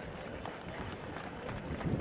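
Footfalls of a squad of soldiers in boots jogging together across a paved parade ground, a fast patter of many steps.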